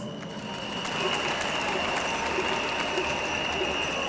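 Crowd applauding: a dense, even clatter of many hands clapping, with a steady high tone held over it.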